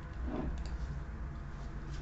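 Quiet room tone: a low steady hum, with one faint, brief soft sound about a third of a second in.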